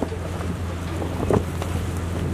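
Steady low hum with a rushing noise, like wind on an open microphone, in a pause between spoken sentences.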